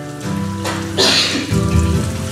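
Held keyboard chords in steady sustained tones, the chord changing about a quarter second in and again near the end, with a brief hiss about a second in.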